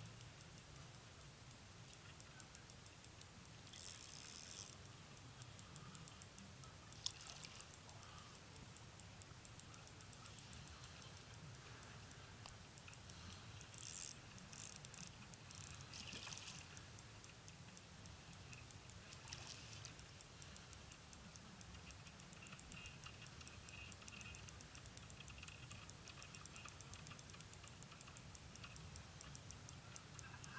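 Steady, fast ticking, about five ticks a second, with a few short bursts of noise about four seconds in and again around fourteen to sixteen seconds.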